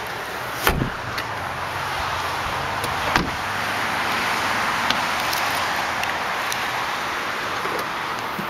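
Two thumps of a car door being shut, about a second in and again about three seconds in, over a steady hiss.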